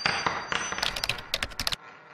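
Intro sound effect for an animated logo: a busy run of sharp clicks over a faint high ringing tone, ending in a quick flurry of clicks that stops about three-quarters of the way through, followed by a faint fading tail.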